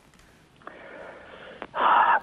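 A man's breath heard through a telephone line. A faint line hiss opens up about half a second in, then a louder breathy rush comes near the end.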